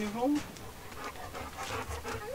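Dog panting in quick, repeated breaths, with a short rising voice-like sound at the start.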